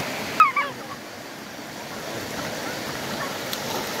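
A river rushing steadily over its bed. About half a second in comes a single short, loud high-pitched cry.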